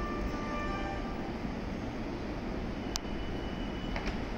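A stationary 683-series electric limited express train running at a station platform: a steady hum and rumble from the standing train and the station, with a few steady tones fading out in the first second and a sharp click about three seconds in.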